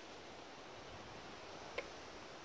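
Faint steady background hiss with a single short click near the end.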